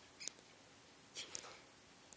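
Young rat pups squeaking: a few short, high-pitched squeaks, once about a quarter second in and a small cluster just past the middle.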